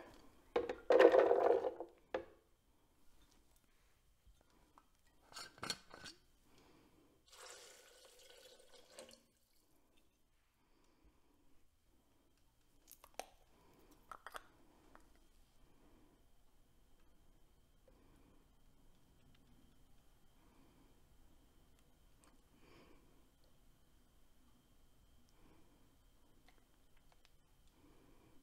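Soaked cashews tipped from a porcelain bowl into a plastic Blendtec blender jar, loudest about a second in, followed by a few clinks and a short rustling scrape. A few sharp clicks around the middle as the lid of a glass honey jar is twisted open, then only faint handling sounds.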